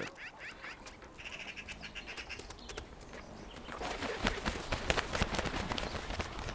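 Common ravens: a few faint calls, then from about two-thirds in a quick run of soft clicks and flutters as a pair of them takes off.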